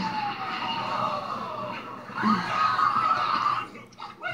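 Cartoon film soundtrack playing from a TV: a whistle that slides steadily down in pitch over about two seconds. About halfway through comes a louder stretch of several held tones that stops shortly before the end.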